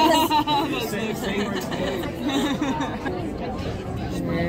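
Several people chattering at once, with voices strongest in the first second or so and then lower, over a steady background murmur.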